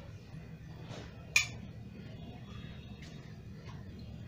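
A spoon gives one sharp clink about a second and a half in, with a few fainter taps later, as tablespoons of cooking oil are measured into a tawa (flat griddle). A low steady hum runs underneath.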